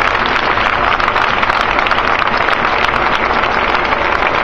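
A large outdoor crowd applauding steadily, a dense clatter of many hands clapping.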